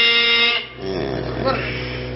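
A man's chanting voice holding one long note, which stops about half a second in. A low steady hum follows.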